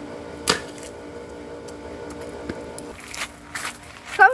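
A sharp knock about half a second in, over a steady hum, then a cluster of knocks and rustles in the last second as the camera is handled up close.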